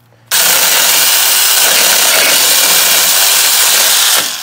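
Alloyman 6-inch cordless mini chainsaw switching on abruptly just after the start and running steadily as its chain cuts through a small tree trunk, then stopping right at the end.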